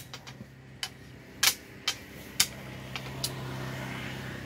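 Wooden xiangqi pieces clacking as they are handled on a wooden table, about six sharp clicks spread irregularly. A steady low engine hum sets in partway through.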